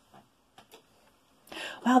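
A few faint, light clicks of small objects being handled on a wooden tabletop, then near the end a breath and a woman saying "Wow".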